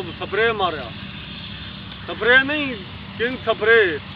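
A voice speaking in three short bursts with rising-and-falling pitch, over a steady low background rumble.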